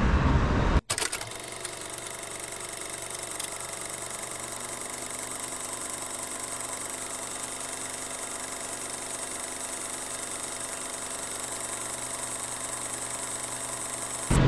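A steady, unchanging hum made of several fixed tones, cutting in abruptly after a momentary dropout about a second in.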